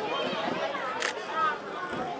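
A single camera shutter click about a second in, over a background murmur of voices from people gathered on a stage.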